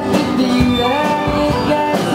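Country band playing live: strummed acoustic guitar, electric guitars and lap steel, with long held notes that slide up in pitch and settle.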